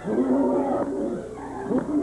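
A man growling and grunting in animal-like noises, one long growl in the first second and then shorter grunts.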